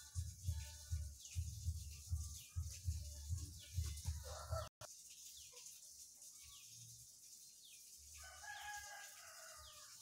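Background music with a steady low beat that cuts off abruptly about halfway through, giving way to outdoor ambience with small birds chirping. A rooster crows once near the end, for about a second and a half.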